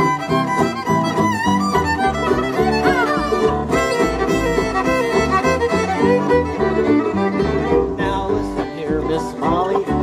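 Bluegrass fiddle taking an instrumental break, its sliding melody leading over the band's string backing and a stepping bass line.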